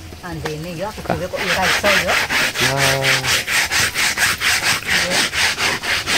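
A rhythmic scraping, about four to five short strokes a second, starting about a second and a half in. A man's voice comes briefly near the start and once more, as a held tone, around the middle.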